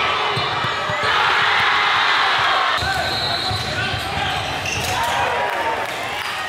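Live game sound in a gym: a basketball dribbled on a hardwood court over crowd chatter and noise, the crowd sound changing abruptly about a second in and again near three seconds.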